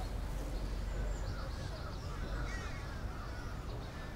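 Birds calling several times, over a steady low rumble.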